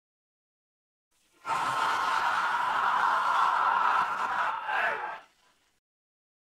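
A long breathy, hoarse vocal sound from an isolated vocal track, without a clear pitch, starting about a second and a half in and cutting off a little after five seconds.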